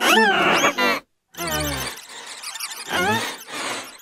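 Cartoon dialogue run through pitch-shifting audio effects, so the voices are unintelligible: a very high, squealing voice with rising glides for the first second, a sudden short dropout, then a deep, low voice and more warped speech.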